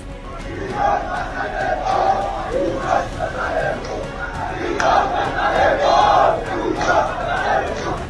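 Large crowd of protesters shouting together, many voices massed, swelling in repeated surges.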